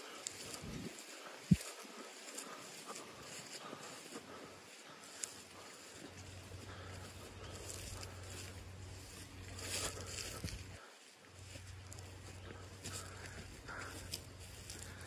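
Quiet footsteps swishing through grass as someone walks, over a steady outdoor background, with one sharp click about a second and a half in.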